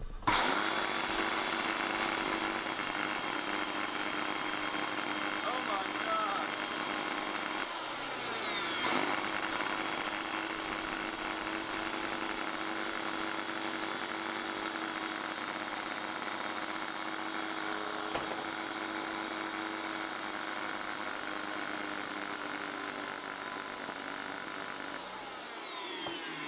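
Old Dyson vacuum cleaner's brushed motor running with a steady high whine. About eight seconds in it is switched off and its pitch falls, then it is switched back on and spins up. Near the end it winds down again. The motor is throwing sparks inside, which the owner puts down to the brushes being worn right down.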